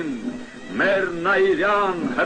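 A voice reciting in Armenian in long, drawn-out, emotional phrases, with music underneath.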